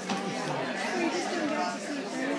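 Indistinct chatter of many people talking at once: an audience talking among themselves.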